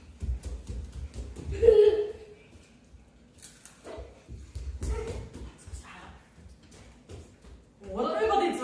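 Children's footsteps thudding on a wooden floor as they run, in two spells about four seconds apart, with a short child's vocal sound about two seconds in.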